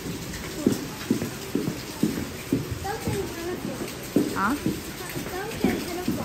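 Footsteps on a wooden boardwalk, about two steps a second.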